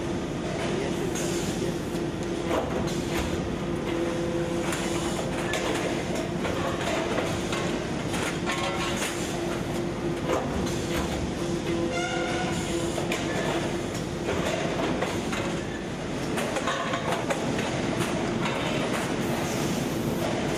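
Rotor aluminium die-casting machine and its workshop running: a steady hum under continual metallic clatter, clicks and knocks.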